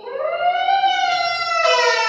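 A man's long, high wailing cry through a microphone, sliding up and then slowly down in pitch like a siren.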